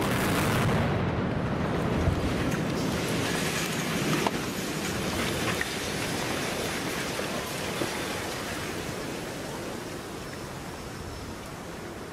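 Explosive charges detonating to bring down a concrete road bridge, followed by a long rumbling roar of the collapsing deck with a few sharp cracks in the first six seconds, slowly dying away.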